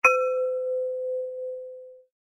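A single bell-like ding, struck once: one low ringing tone with brighter overtones that die away first, fading over about two seconds until it is cut off.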